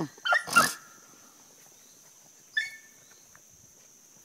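Rabbit hounds giving tongue on a rabbit's trail: two short choppy barks right at the start, then a single yelp about two and a half seconds in.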